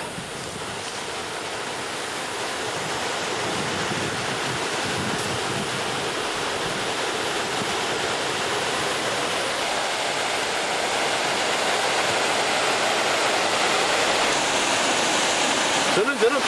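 Waterfall plunging into a pool: a steady rush of falling water that grows slowly louder.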